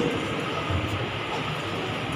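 Steady background noise in a crowded hall: an even hum and hiss with no distinct events.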